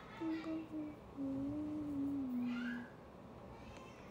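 A young woman humming with closed lips: a couple of short notes, then one long lower note about a second in that slowly steps down in pitch and stops near the three-second mark.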